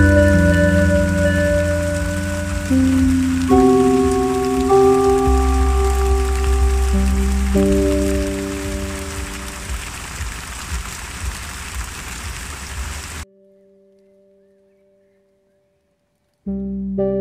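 Steady rain falling on the sea, with slow background music of held notes over it. About 13 seconds in the rain and music cut off suddenly, leaving one fading note and then silence.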